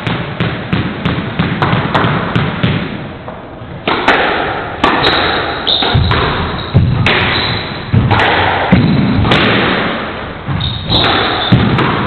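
Squash ball bounced on the wooden court floor before a serve, about three light taps a second. About four seconds in a rally starts: loud racket strikes and ball impacts on the walls, about one a second, each echoing around the enclosed court.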